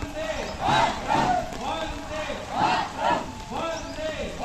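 A group of men and women shouting a patriotic slogan together, in two-beat shouts repeated about every two seconds.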